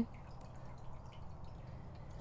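Low steady background hum with a few faint, scattered ticks.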